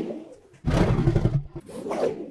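Transition sound effect for a sliding number card: a loud rushing noise starts a little over half a second in and lasts about a second, then a shorter, fainter rush fades out near the end.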